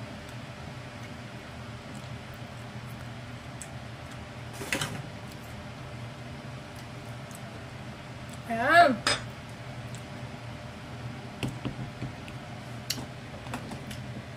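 A few light clinks of a metal spoon and dishes over a steady low kitchen hum. A little past halfway, a woman makes one short vocal sound that rises then falls in pitch, the loudest moment.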